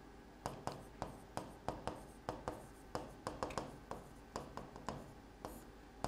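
Chalk writing on a blackboard: an irregular run of short taps and scrapes, several a second, as a word is written and underlined.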